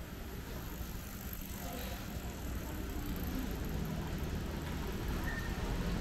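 Steady low street rumble with a small pickup truck's engine running close by, getting a little louder toward the end.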